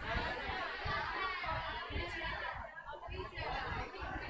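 Faint chatter of several people talking at once, with a large-room echo.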